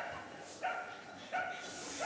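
A dog barking three times, in short barks spaced a little over half a second apart.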